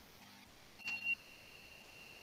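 A short high-pitched chime or beep about a second in, loudest at its start and then ringing on faintly as a steady tone for about two seconds.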